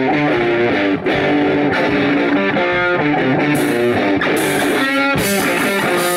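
Electric guitar playing a rock riff of single notes that change quickly. A little past halfway the drum kit joins with cymbals.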